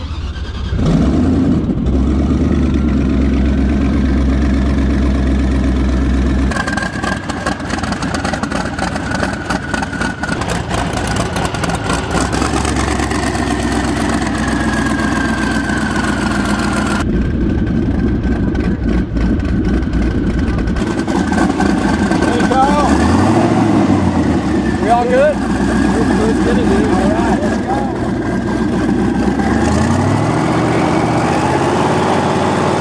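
A 900-horsepower custom airboat engine starts suddenly and runs loud and steady, driving its spinning caged propeller, while it warms up. Its pitch shifts a few times, with short rising and falling sweeps about two thirds of the way through.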